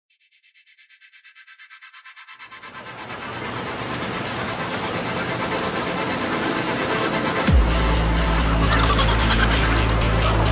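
Electronic dance music fading in as a rhythmic build-up that opens out from thin and high to full range. About three quarters of the way through comes a drop: a quick falling bass sweep, then heavy steady bass.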